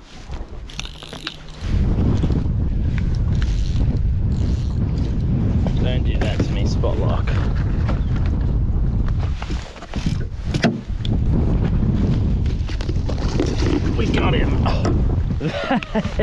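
Wind buffeting the microphone: a loud, steady low rumble that sets in suddenly about two seconds in and dips briefly around the middle, with a couple of sharp knocks in the dip.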